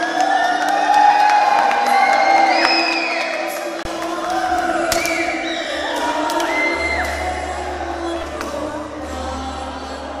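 A woman singing a solo into a microphone with live band accompaniment, holding long notes that slide in pitch.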